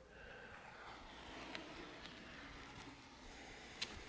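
Painter's tape being peeled slowly off a baseboard and floor seam while the caulk is still wet, a faint steady rasp with a light tick near the end.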